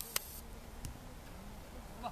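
Faint open-air ambience of a football pitch, a steady low background noise, with a few short sharp clicks in the first second.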